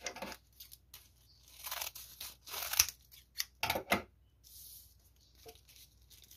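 A foil-lined plastic mailer bag being opened: several short strokes of crinkling and tearing plastic, about a second apart, the loudest near the middle.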